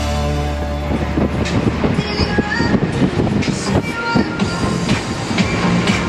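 Background music over the loud rush of a center console boat running at speed on open water, with many irregular sharp knocks through the noise.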